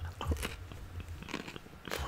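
Crunching and chewing a bite of raw cucumber: irregular crisp crunches, with a sharper crunch near the end.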